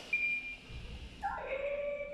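Doc educational coding robot beeping from its speaker: a short high steady beep just after the start, then a longer, lower held tone with overtones in the second half.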